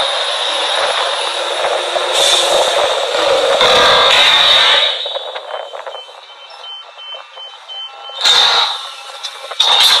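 Workover rig machinery running loudly, dropping off about five seconds in. In the quieter stretch a reversing alarm gives a row of short high beeps, about three a second, followed by a brief loud burst of machine noise about eight seconds in.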